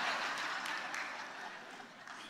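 Congregation laughing, with some scattered clapping, the noise fading away steadily.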